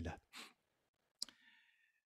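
A breath, then about a second and a quarter in a single sharp click that rings briefly; otherwise near silence.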